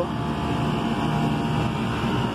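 Air-handling unit running steadily, with the low hum of its newly replaced refrigeration compressor and fans. The unit is working normally after the compressor replacement.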